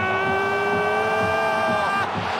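A male sports commentator's long, drawn-out shout of 'goal', held on one high pitch for nearly two seconds over background din.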